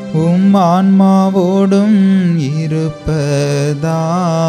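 A priest's voice chanting a liturgical prayer: a single male voice in a slow, wavering melodic line, breaking briefly for breath about three seconds in.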